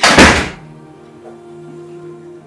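An interior wooden door shut hard: one loud thud right at the start that dies away within about half a second. Soft background music with held tones underneath.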